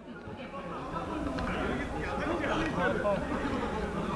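Indistinct voices of several men talking and calling out at a distance, over a low steady background noise.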